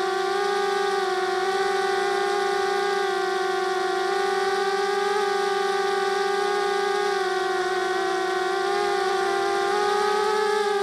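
Diatone 250 quadcopter's motors and propellers whining steadily in a hover, the pitch wavering a little as the throttle shifts, dipping about eight seconds in and rising again near the end. Heard from the quadcopter's own camera, close to the propellers.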